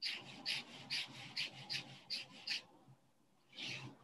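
Black Sharpie marker tip flicked quickly across paper, drawing pine-needle lines: about seven short scratchy strokes a little under half a second apart, then a longer rub near the end.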